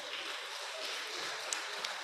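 An audience applauding lightly and steadily in a large hall, with a few sharper individual claps near the end.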